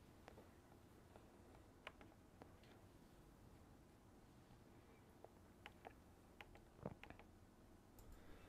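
Near silence with a handful of faint, scattered clicks from typing on a laptop keyboard.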